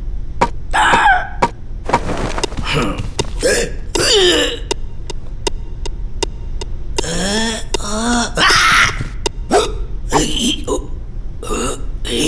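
Wordless cartoon voice sounds: gurgling, burp-like grunts and squeaks that slide up and down in pitch. Sharp clicks fall between them, with a steady run of about three or four a second in the middle.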